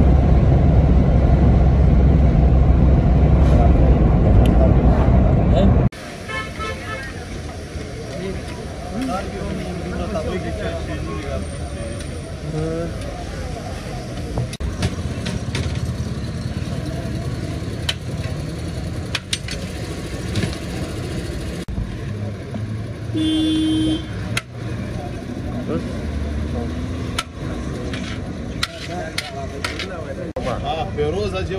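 Loud, steady road rumble from inside a moving vehicle, which cuts off about six seconds in. It gives way to busy street ambience with background voices and occasional clicks, and a car horn sounds once briefly a little over 20 seconds in.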